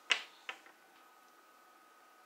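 Hard domino tiles clicking on the tabletop: two sharp clicks about half a second apart, the first louder, with a faint tick after.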